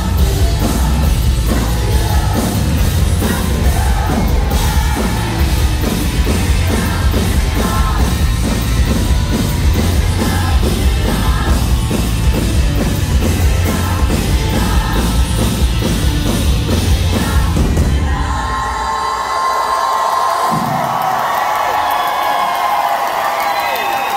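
Rock band playing the loud final bars of a song live, with drums, bass and electric guitars. About 18 seconds in the band stops and the crowd cheers, whoops and screams.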